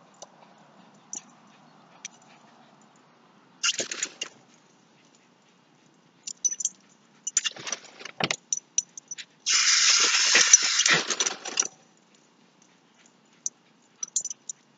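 Lawn sprinkler's water jet sweeping past and spattering close by: three bursts of hissing spray, a short one about four seconds in, another around eight seconds, and the longest and loudest lasting about two seconds near the end, with scattered small clicks of drops between.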